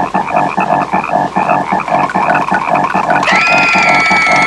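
Cartoon frog croaking in a fast, even rhythm of about six or seven pulses a second. About three seconds in, a high, held cartoon scream starts over it.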